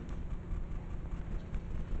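Low, steady background rumble in a meeting room, with a faint click at the start and no speech.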